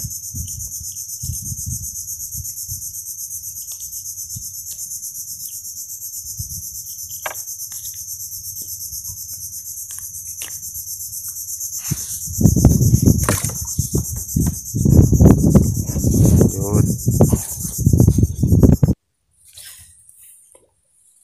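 Steady, high-pitched chorus of insects from the mangroves over a low rumble. About twelve seconds in, a much louder, uneven rumbling noise takes over, and everything cuts off suddenly near the end.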